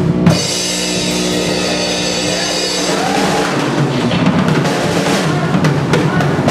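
Drum kit played live in a rock song, with a held chord from another instrument ringing over the drums for the first few seconds.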